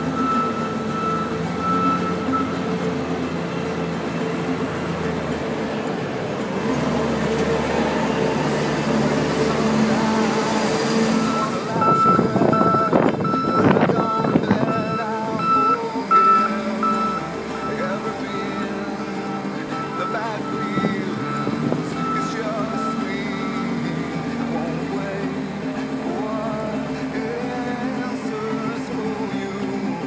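A Case 721F wheel loader's diesel engine runs steadily while its reversing alarm beeps at an even pace, first near the start and then again from about twelve seconds in. Around twelve to sixteen seconds in, a louder stretch of knocks and rattles comes through.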